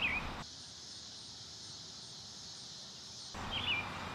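Faint park ambience: a steady high insect buzz, with a short bird chirp at the start and another near the end.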